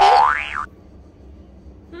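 A cartoon-style "boing" sound effect: one pitched glide that rises and then turns down, lasting just over half a second and cutting off sharply.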